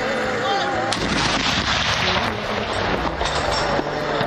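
Towed howitzer firing in a ceremonial gun salute: a sharp boom about a second in, followed by a long echoing rumble, with another sharp report near the end.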